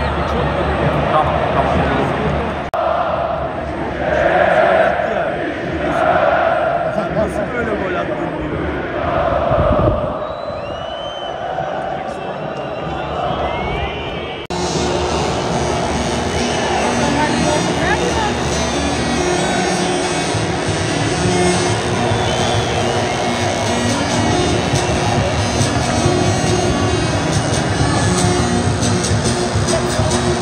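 Football crowd chanting in a stadium, the chant swelling in a steady rhythm about every two seconds. About halfway through, a cut leads into a denser, steadier wash of crowd singing.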